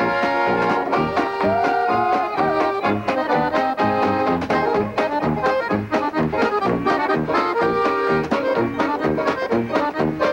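A polka played on a piano accordion with a band: a fast accordion melody over a tuba bass keeping a steady beat.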